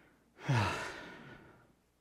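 A man sighs aloud: a short voiced start falling in pitch about half a second in, then a breathy exhale that fades out about a second later.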